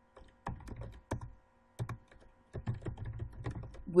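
Computer keyboard typing: scattered single keystrokes, then a quicker run of keys in the last second and a half.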